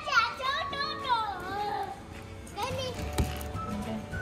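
Children's voices and chatter over background music in an arcade, with one sharp click about three seconds in.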